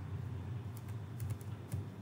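A few scattered, light clicks of computer keyboard keys over a low, steady hum.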